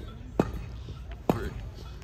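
Two sharp knocks about a second apart over a steady low rumble.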